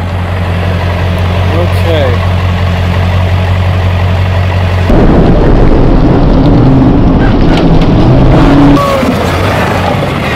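Pickup truck engine running steadily, then about five seconds in it revs hard under load as the rear wheels spin and churn through sand and gravel, dragging a heavily loaded trailer out of a wash; the revving eases slightly near the end.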